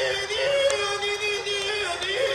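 A ventriloquist's high singing voice holding one long note, with a brief rise in pitch about half a second in and a dip near the end.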